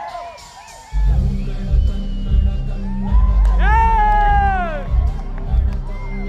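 Crowd cheering and whooping fades, then about a second in a loud, bass-heavy dance track starts abruptly over the stage sound system. A long, falling vocal cry rises over the beat around the middle.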